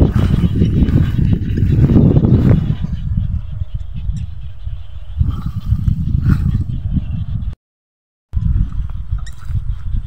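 Wind buffeting the phone's microphone, a loud gusty rumble that is strongest in the first three seconds. The sound cuts out completely for under a second near the end.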